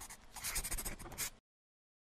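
Scratchy writing sound effect, like a pen scraping quickly across paper in rapid strokes, played as the rating card's lettering is drawn; it stops abruptly about one and a half seconds in.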